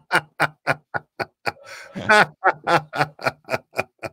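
Hearty male laughter: a long run of 'ha-ha' pulses, about four a second.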